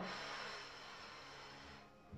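A woman's long, soft exhale, a breathy hiss that fades away over almost two seconds.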